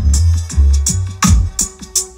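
Music with a heavy, booming bass line and a drum beat, played loud through a sound system's stacked speaker boxes.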